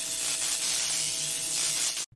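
Electrical buzzing and hissing of a neon-sign sound effect, steady with a faint hum underneath, cutting off suddenly at the end.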